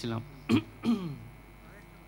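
A man clears his throat into a handheld microphone: a sharp short sound about half a second in, then a brief voiced sound falling in pitch.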